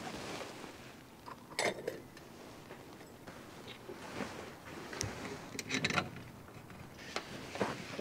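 Scattered light metallic clicks and knocks as a cast brake master cylinder is handled and fitted by hand onto a truck's firewall.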